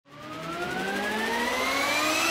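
A rising sound-effect riser: several pitched tones glide steadily upward together over a hiss, fading in from silence and growing louder.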